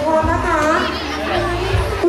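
Children's voices and chatter from a crowd, with a child's singing voice in among them.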